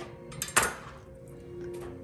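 A single light clink of kitchenware about half a second in, over soft background music.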